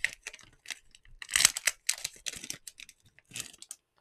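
Clear plastic packaging crinkling and being torn open by hand to free a small circuit board: irregular crackles, loudest in a burst about a second and a half in.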